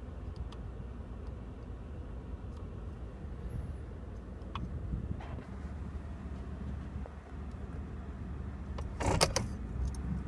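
2015 Ford F-150's engine idling in Park, a steady low hum heard from inside the cab. About nine seconds in, a brief loud cluster of clicks and rattle.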